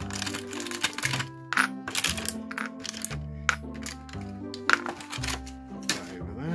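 Repeated sharp clicks and clinks of metal miniature figures being taken out of a plastic blister tray and set down, the loudest about three quarters of the way through. Background music with a steady bass line runs underneath.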